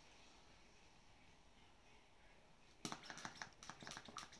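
Near silence, then, a little before the end, a quick run of sharp clicks, several a second: a plastic pistol-grip vacuum pump being worked on a plastic cupping cup's valve to draw suction.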